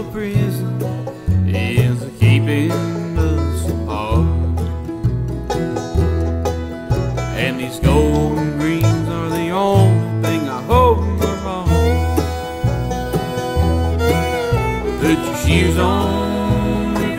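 Live bluegrass band playing an instrumental break between sung verses: banjo and acoustic guitars over a steady upright bass line.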